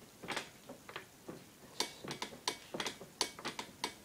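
Irregular light clicks and ticks, about fifteen over a few seconds, some sharper than others.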